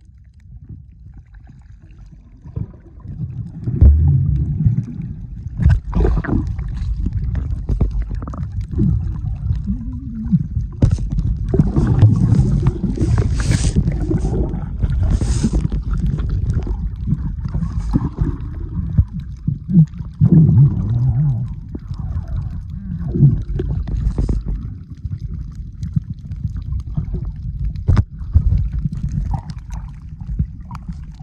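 Muffled underwater sound of water moving around a swimmer's camera: a low rumble with bubbling and gurgling and short bursts of bubbles, growing louder about four seconds in.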